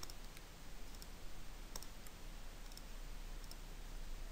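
Computer mouse buttons clicking about half a dozen times at irregular intervals, two of them quick double-clicks.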